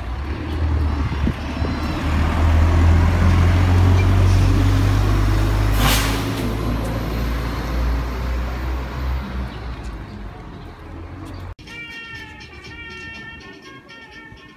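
City bus diesel engine running loud and close, a low rumble that swells and then fades as it moves off, with a short hiss about halfway through. Near the end the sound cuts abruptly to quieter, high-pitched wavering tones.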